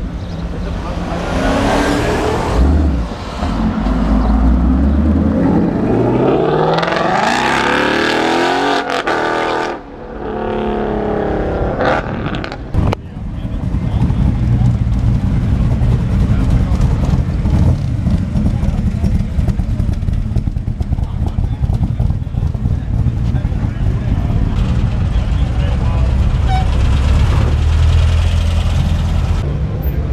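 Mustang GT's 5.0 V8 accelerating hard away, its revs rising through the gears over the first several seconds. This is followed by a sharp knock and then a steady low rumble of engines as more cars drive slowly past.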